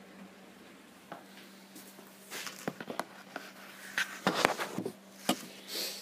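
Plastic water bottles knocking and crackling against each other and the wire basket as hands rummage in a chest cool box and lift one out: a scatter of short clicks and knocks, busiest in the middle seconds. A steady low hum runs underneath.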